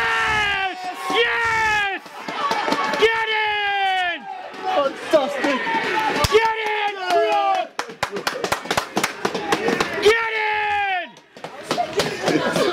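Men shouting and cheering a goal in long cries that fall in pitch, one after another, with a spell of hand clapping about eight seconds in, then one more cheer.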